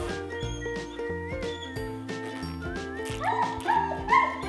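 Background music plays throughout. About three seconds in, a dog starts barking, with two short barks in quick succession.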